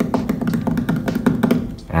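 Quick rhythmic percussive beats and taps over a steady low hum, stopping shortly before the end.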